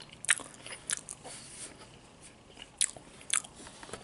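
Close-miked chewing of a toasted grilled cheese sandwich: a person's mouth working the food, with several sharp, crisp crunches and clicks, the loudest about a second in and twice near the end.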